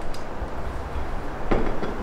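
Low rumble of handling noise with a light click near the start, then a short knock about one and a half seconds in as the espresso machine's metal filter basket is set down on a wooden table.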